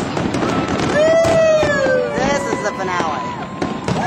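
Aerial fireworks bursting overhead: a dense run of sharp bangs and crackles, with long tones gliding slowly downward through the middle.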